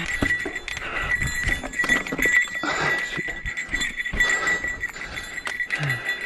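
A mountain biker's heavy, rhythmic breathing while pedalling uphill, a puff about every second, over the clicks and rattles of the bike on rocky dirt trail.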